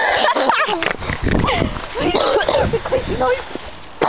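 Young people's voices close to the microphone, laughing and calling out with indistinct, unrecognised words.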